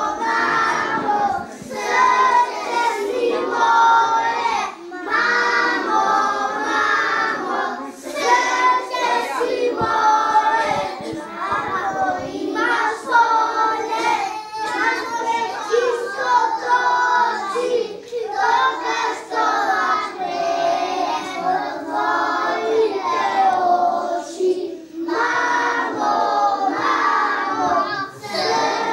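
A group of young children singing a song together in chorus, phrase after phrase, with brief pauses for breath between lines.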